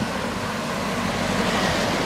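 Street traffic: a car passing close by, its engine and tyre noise over a steady low rumble.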